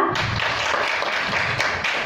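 Applause from a roomful of students, many hands clapping steadily.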